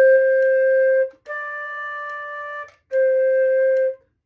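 Concert flute playing three held notes, C, D, C, each about a second and a half long with short breaths between; the D is a step higher and softer than the two Cs.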